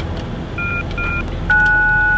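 Gate entry keypad beeping as a code is keyed in: two short key-press beeps, then a longer steady tone about a second and a half in as the code is accepted. A car engine idles under it.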